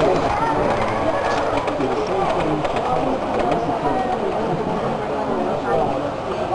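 Indistinct chatter of several people talking at once, with a few faint clicks.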